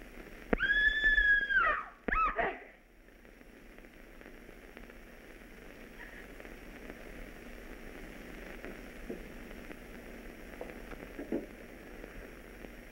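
A high brass note, held for about a second and falling off in pitch at the end, then two short sliding notes closing a music cue. After that only the steady hiss of an old film soundtrack.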